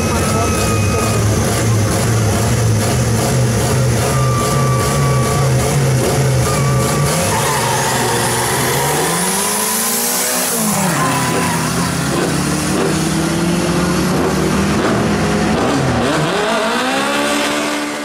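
Drag-racing hatchback engines revving hard on the start line, then launching. About ten seconds in, one car sweeps past at full throttle, its pitch rising and falling, and the engine note then climbs again through the gears as it pulls away down the strip.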